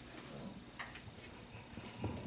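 Faint footsteps on a hard tile floor: a few light, scattered clicks over quiet room tone.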